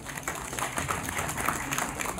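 Audience applauding, a dense patter of many hand claps.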